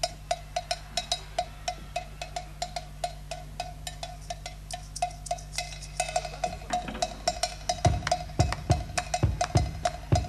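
Live band percussion: a small struck percussion instrument ticks out a steady beat of about three to four strokes a second. Deep bass-drum hits join about eight seconds in.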